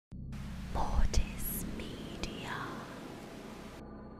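Logo intro sound: a whispered voice over hissing static and a low hum, broken by sharp clicks about a second in and again past two seconds. The static cuts off suddenly near the end.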